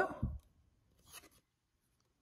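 Brief faint rustle of cardboard trading cards being slid out of a hand-held stack, about a second in, just after the end of a spoken question.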